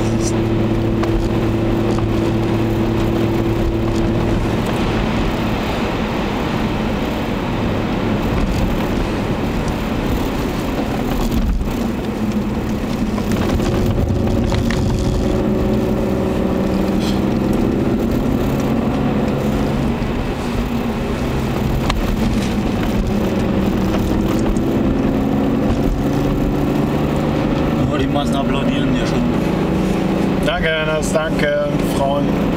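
BMW 525i E34's 2.5-litre 24-valve straight-six (M50B25TU) heard from inside the cabin under way, over tyre and road noise. The engine note climbs twice as the car accelerates, about halfway through and again near the end.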